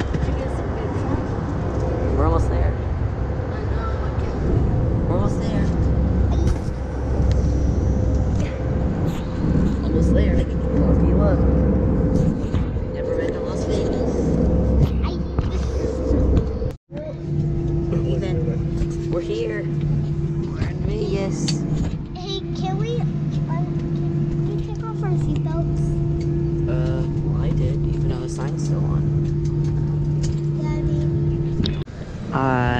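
Steady drone of an airliner cabin in flight, the engine and air noise holding one even hum. About 17 seconds in it cuts off abruptly and a different steady drone with two clear tones takes over. Indistinct voices can be heard over it.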